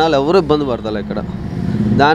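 A man's voice briefly at the start, then the steady engine hum of a passing motor vehicle on the road, growing louder toward the end.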